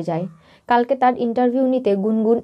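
Speech only: a woman narrating in Bengali, with a short pause about half a second in.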